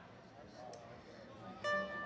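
Low murmur, then about one and a half seconds in a single plucked note on a small acoustic string instrument rings out.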